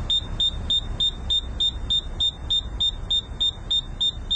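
Rapid electronic alarm beeping: a short, high-pitched beep repeating about four times a second, over a low rumble.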